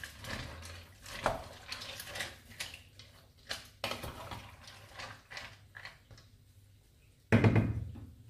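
Wooden spatula stirring pasta and broccoli in liquid in a large metal pot, with repeated scrapes and knocks against the pot. A louder thump comes near the end.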